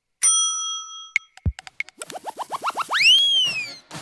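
Cartoon sound effects of an animated transition bumper: a bell-like ding that rings for about a second, then a low falling tone. About nine quick rising chirps follow and lead into one long whistle that rises and then falls.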